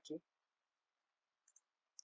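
Near silence with a faint, short computer mouse click about one and a half seconds in and another near the end.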